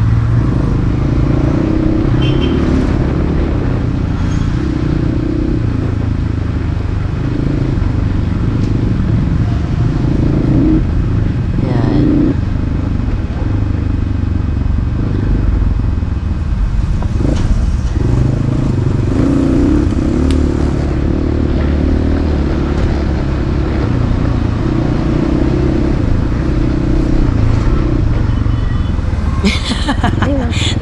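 Dirt bike engine running as the bike is ridden over a rocky dirt track, its note rising and falling with the throttle.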